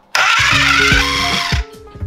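Food processor motor running in a short burst, chopping cubed brioche into crumbs; it starts abruptly and cuts off after about a second and a half.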